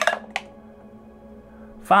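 A single six-sided die rolled onto the table, two short clicks about a third of a second apart near the start, over quiet background music.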